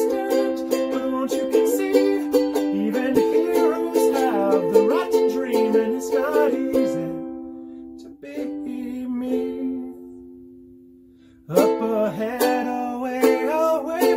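Ukulele strumming chords. About seven seconds in the strumming stops, a single strummed chord rings out and fades away, and the strumming starts again about eleven and a half seconds in.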